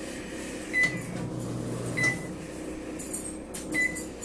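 Hamilton Beach microwave's keypad beeping three times, short high beeps spaced about one to two seconds apart, as buttons are pressed to set its clock.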